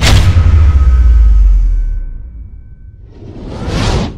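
Whoosh sound effect of an animated logo: a sudden swoosh with a deep booming rumble that fades over about two seconds, then a second whoosh that rises and swells near the end before cutting off.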